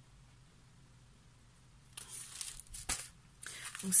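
A scrapbooking paper kit in its packaging being handled and set down on a desk: rustling and crinkling starting about halfway, with a sharp click about three seconds in.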